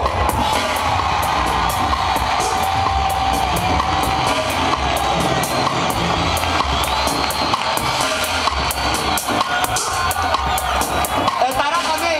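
Minimal techno DJ set played loud over a club sound system: a steady four-on-the-floor kick drum with regular ticking hi-hats.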